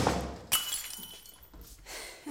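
A heavy thud, then about half a second later a sharp crash with a bright, glassy ringing that fades over the next second.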